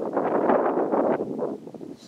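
Wind buffeting the camera microphone in gusts on an open mountain ridge, dying down near the end.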